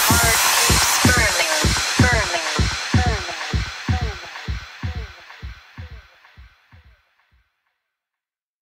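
Electronic dance track ending: a steady beat with repeating falling synth notes, fading out to silence about seven seconds in.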